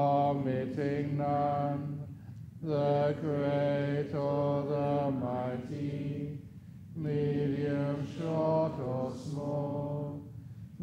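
Buddhist monk chanting Pali verses in a steady recitation tone on mostly level pitches. The phrases break for breath about two seconds in and again around six to seven seconds.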